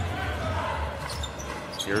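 Basketball dribbled on a hardwood court over a low, steady arena rumble, with faint distant voices. A commentator's voice comes in near the end.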